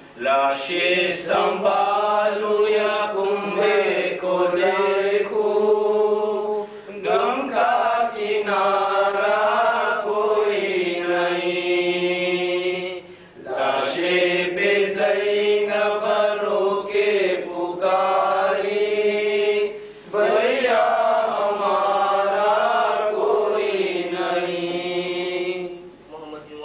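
Male voice chanting a Shia Muharram lament (noha) in long, drawn-out melodic phrases, with three short pauses for breath.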